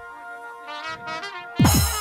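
Jatra stage band playing held brass notes with a short melodic phrase, then a loud crash with a deep falling tone about one and a half seconds in, as a dramatic accent.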